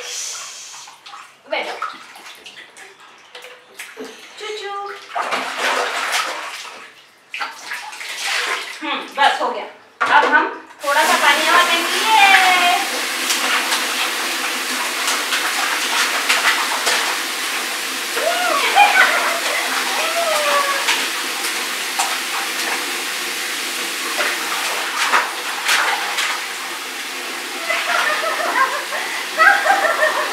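Water splashing in a plastic baby bathtub, then, about eleven seconds in, a wall tap starts running into a plastic bucket and keeps up a steady rush of water. A few voice sounds come over the water.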